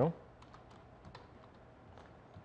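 Typing on a computer keyboard: a few faint keystrokes at an uneven pace.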